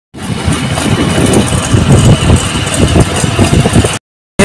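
A motorcycle running, with loud, uneven low rumbling and hiss.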